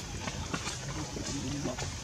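Faint human voices talking in the background, in short broken snatches, with scattered small clicks and rustles.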